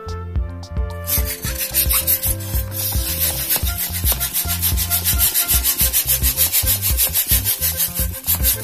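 Latex balloon being inflated with a small hand pump: quick, even pumping strokes of air, about five a second, starting about a second in, over background music.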